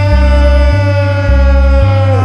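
Live indie rock band playing, the male lead singer holding one long high note over a bass line that alternates between two low notes about twice a second.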